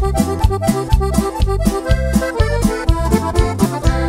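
Instrumental break of a norteño-banda song: accordion playing the lead over a steady bass line and drum beat.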